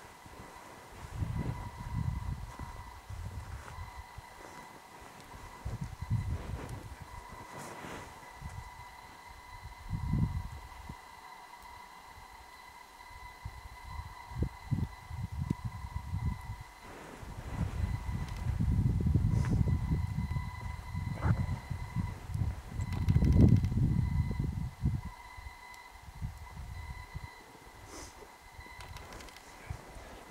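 Low rumbling swells of noise that come and go every few seconds, the strongest about two-thirds of the way through, over a faint steady high-pitched whine.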